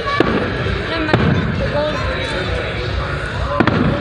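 Aerial firework shells bursting: three sharp bangs, one right at the start, one about a second in and one near the end, over the steady chatter of a crowd.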